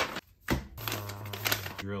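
Paper instruction sheets being handled and unfolded, rustling with a couple of sharp crinkles.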